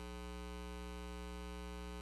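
Steady electrical mains hum with a buzz of overtones, unchanging throughout, picked up in the church's sound and recording system.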